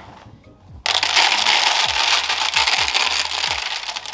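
Pine bedding pellets poured from a bowl into a plastic cage tray: a dense, loud rattling patter of pellets hitting the plastic and each other. It starts about a second in and keeps going.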